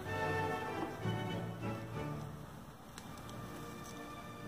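Background music with held, sustained notes, getting a little softer in the second half.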